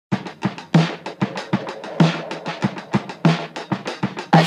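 A drum kit playing a steady beat on its own at the start of the song, about four hits a second, with heavier kick-drum hits about every second and a quarter.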